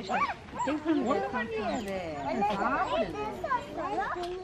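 Overlapping voices of children and adults, with short animal calls mixed in.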